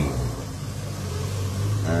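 Lorry engine running, heard inside the cab as a steady low hum, with a short spoken 'um' at the very end.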